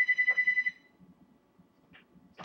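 Electronic telephone ringer trilling: a high, rapidly fluttering tone that cuts off under a second in.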